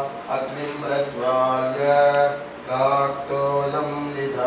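Male priests chanting Vedic mantras during a homam fire ritual, holding long syllables on a near-steady pitch in phrases that break about once a second.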